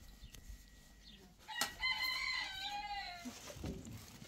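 A rooster crowing once, about a second and a half in: a single drawn-out call of about a second and a half that rises, holds, and falls away at the end.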